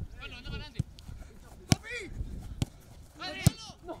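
Four sharp kicks of a football about a second apart, with players' shouts in between.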